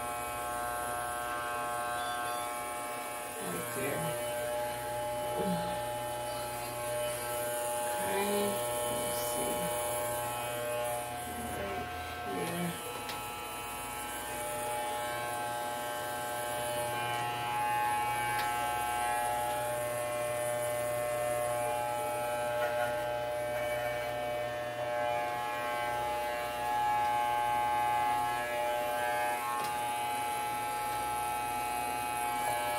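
Corded electric hair clippers running with a steady buzz while trimming the front of a hairline.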